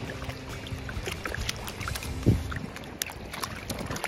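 A puppy's paws splashing and sloshing through shallow river water, with many small splashes, and one louder low thump a little past halfway.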